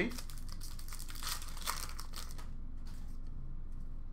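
Hockey card packs and cards being handled: a flurry of crinkling and rustling for about the first two and a half seconds, then only a few faint ticks.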